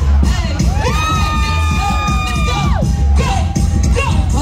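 Hip hop beat with heavy bass playing loudly through the PA, with crowd cheering over it. About a second in, one long high-pitched yell is held for nearly two seconds before dropping away.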